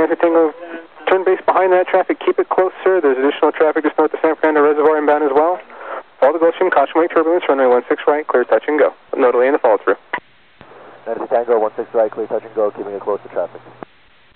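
Air traffic control radio speech on an airport tower frequency: several back-to-back clipped transmissions, narrow-band and tinny, with short breaks between them and a low steady hum under the last one.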